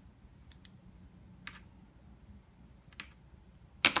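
A plastic pen being spun in the fingers, a few light clicks and taps against them, then a sharp clack near the end as the pen drops onto the cutting mat.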